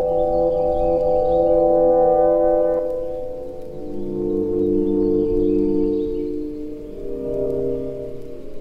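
Slowed-down, heavily reverbed instrumental hip-hop beat: sustained, washed-out chords with no drums, the chord changing about three seconds in and again near the end.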